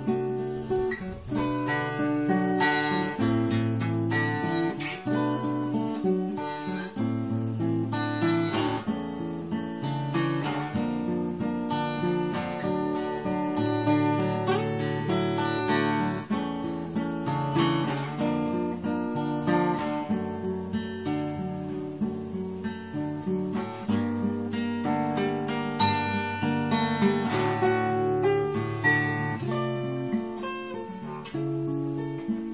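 Acoustic guitar being played, its chords strummed and ringing on throughout.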